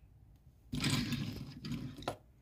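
Diecast toy car handled on a tabletop: a rushing scrape of its small wheels rolling across the surface, starting under a second in and lasting about a second.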